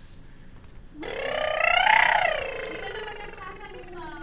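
A young child's voice: one long wordless cry that starts about a second in, climbs to a high squeal and slides slowly back down in pitch.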